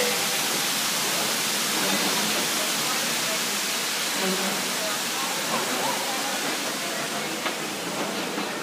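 A loud, steady rushing hiss with faint voices under it.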